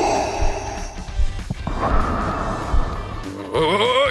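Darth Vader's mechanical respirator breathing: two long, hissing breaths, one after the other, made by breathing into a scuba regulator's mouthpiece with a microphone on it. Background music runs under it, and a voice begins near the end.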